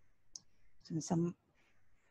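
A single short, sharp click about a third of a second in, followed around a second in by one brief spoken syllable.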